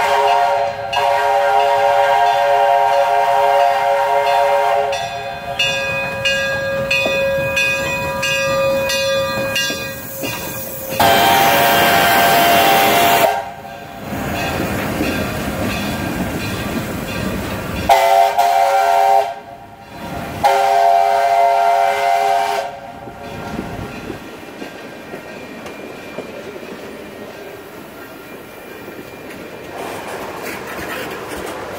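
Iowa Interstate 6988, a Chinese-built QJ steam locomotive, blows a long, loud multi-note steam whistle as it approaches, followed by a burst of loud steam hissing and the noise of the engine passing close by. Two more short whistle blasts sound in the middle. Near the end the passenger cars roll past more quietly.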